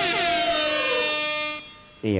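The end of a DJ dance track: the beat has stopped and a horn-like synth tone slides down in pitch, fading away about a second and a half in.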